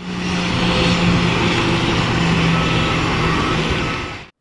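Jet engines of a taxiing Ryanair Boeing 737 running steadily: a broad hiss with a low steady hum underneath.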